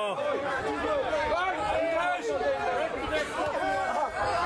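Several people talking at once, their voices overlapping in continuous chatter.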